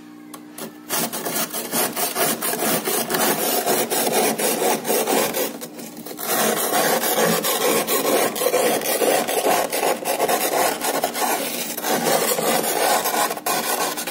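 A metal utensil scraping thick frost off a freezer's upper wall in rapid, rasping strokes, with short breaks about six seconds in and again near twelve seconds.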